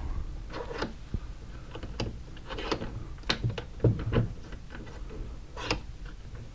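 Light knocks and clicks, scattered and irregular, as a rifle is handled and settled on a towel-padded vise at a workbench.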